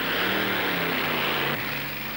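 Drag-racing car engine running steadily, its pitch shifting slightly about a second and a half in.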